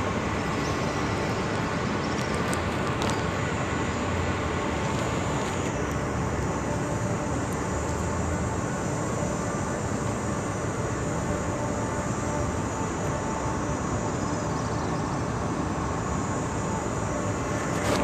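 Steady outdoor city noise, an even roar of traffic, with no distinct events.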